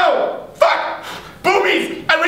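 A man's short, loud wordless yells, three in quick succession, each breaking off sharply and trailing down.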